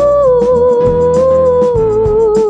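Music from a children's song about the planets: one long held melody note that sinks slightly in pitch, over a steady drum beat.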